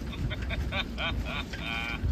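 Recorded laughter played through the small, tinny speaker of a battery-powered joke gadget: a string of short 'ha' bursts ending in a longer one near the end. Wind rumbles on the microphone throughout.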